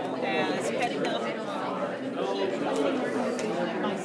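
Indistinct chatter of several people talking at once, a steady hubbub of overlapping voices with no clear words.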